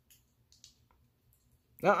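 A few faint, short sticky clicks from hands coated in wet paint being rubbed together, then a voice saying "uh-uh" near the end.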